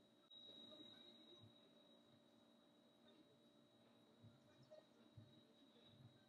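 Near silence: room tone with a faint steady high tone, and a few very faint low bumps near the end.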